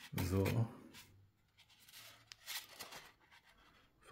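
Faint, brief scrapes and clicks of 3D-printed plastic parts rubbing against each other as a tail stabiliser is fitted to a fuselage section by hand.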